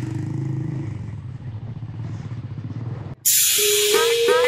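Motorcycle engine running steadily under way, a low hum with a fast even beat. About three seconds in it cuts off suddenly and louder music takes over.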